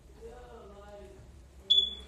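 A faint voice, then near the end a single short, high-pitched electronic beep, the loudest sound here.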